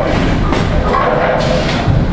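Bowling alley din with background music playing, and a dull thud near the end.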